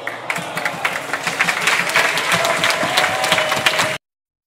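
Large audience applauding, starting about a quarter second in and swelling, then cut off suddenly at the end.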